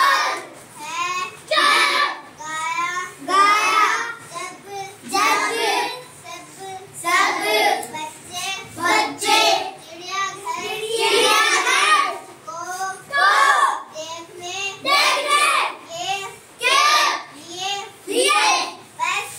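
Children's voices chanting a rhyme in a sing-song voice, in short phrases of about a second separated by brief breaks.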